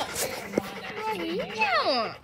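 A St. Bernard whining in smooth, sliding high-pitched tones: one long wavering whine through the middle, then a falling whine near the end.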